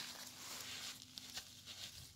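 Faint rustling and crackling of peanut plant leaves and stems as a hand grips the plant at its base to pull it from the sandy soil.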